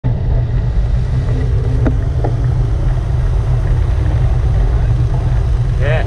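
Wind buffeting the microphone of a camera riding along on a moving bicycle: a loud, steady low rumble, with a little rolling road noise under it.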